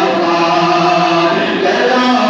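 Male devotional chanting into a microphone, amplified over a public-address system, in long held notes.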